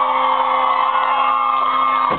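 A rock band's last chord ringing out, held steady on guitar and keyboard, while the crowd cheers and whoops over it.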